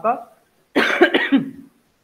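A man coughing, a rough burst just under a second long starting about three-quarters of a second in.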